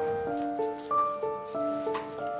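Background music: a light keyboard tune of short notes changing about three times a second, with a rattling, shaker-like sound over it.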